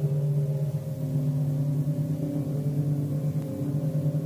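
A low, ominous musical drone: several steady low tones held together, with a higher tone joining about a second in.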